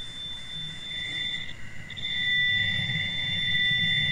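Audio track presented as a recording of the 1977 Wow! signal: a steady high-pitched whistle that swells in level from about a second in. A second, higher steady tone drops out briefly near the middle, over a deeper rumble.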